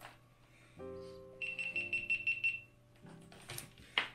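GoPro Hero 9 Black action camera's power-off chime: a short electronic tune of held tones, with a fast run of high beeps over it in the middle. A sharp click follows near the end.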